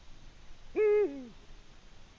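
Eurasian eagle-owl giving a single hoot about a second in, held level and then falling in pitch at the end.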